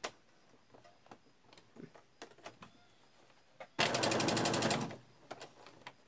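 Domestic electric sewing machine running in one short burst of about a second of rapid, even stitching, resuming a seam along a zip. A few faint clicks come before and after it.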